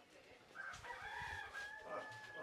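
Rooster crowing: a single crow begins a little under a second in, with a few short rising notes, then settles into a long held note near the end.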